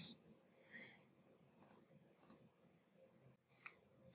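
Near silence broken by three faint, short computer mouse clicks, spread through the second half.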